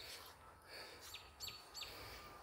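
Faint bird chirping: three short, high, falling chirps in quick succession in the second half, over quiet background.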